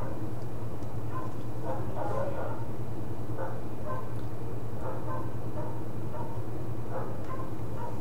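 A steady low hum runs throughout, with faint, scattered short sounds above it.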